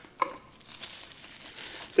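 Plastic bubble wrap crinkling softly as it is pulled off a folding knife by hand.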